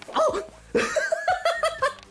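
A man laughing: a short voiced sound, then a quick run of high-pitched 'ha' notes lasting about a second.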